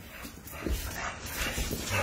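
A pit bull and French bulldog puppies playing on a hardwood floor: short scratchy scuffles of paws and claws on the wood, with faint dog noises.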